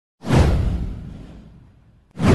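A whoosh sound effect for an animated intro, starting suddenly, sliding downward in pitch over a deep low end, and fading out over about a second and a half.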